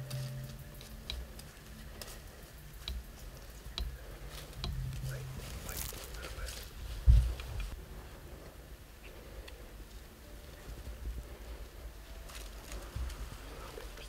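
A compound bow shot: a single sharp thump about seven seconds in, amid faint clicks and rustles of gear in the tree stand.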